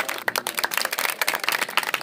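Audience applauding: a crowd clapping hands, dense and irregular.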